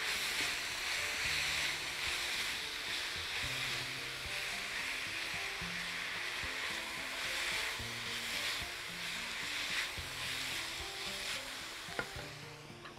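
Minced beef and onion sizzling steadily in a nonstick frying pan as it is browned and stirred with a spatula, under soft background music.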